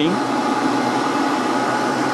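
Heat gun's fan running steadily at full power: an even whirring noise with a faint steady hum.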